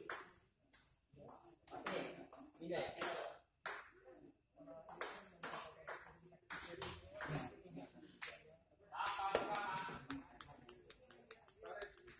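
Table tennis rally: a ping-pong ball clicking off paddles and the table in quick succession, with a fast run of clicks near the end.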